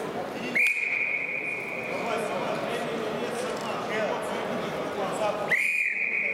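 Wrestling referee's whistle: two long, steady, high blasts, the first about half a second in and the second near the end. They stop the ground wrestling and restart the bout standing.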